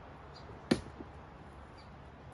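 A single sharp crack from wood and brush underfoot about a third of the way in, followed by a lighter tick, as someone steps down over broken wooden boards.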